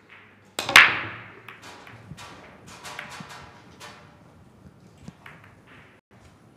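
Heyball break-off: a sharp crack about half a second in as the cue ball is driven into the racked balls, then a scatter of ball-on-ball clicks and cushion knocks that thin out over the next few seconds.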